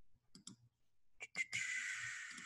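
Computer mouse clicking, two quick clicks and then two more, followed by a long breath out beginning about a second and a half in.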